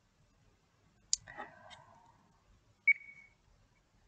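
A pause with little sound: a sharp click about a second in, followed by a faint rustle, then a short, high ringing ping just before three seconds.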